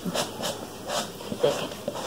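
Plastic screw cap on a large plastic jar being twisted by hand: a series of short scrapes and clicks of plastic on plastic.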